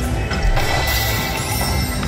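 Slot machine music and sound effects playing while the reels spin on a Wicked Wheel Fire Phoenix video slot.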